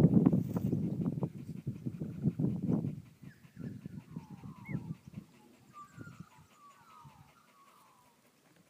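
Kelpie whining in faint, high, gliding notes through the second half, after about three seconds of loud, low scuffling and thudding that dies away.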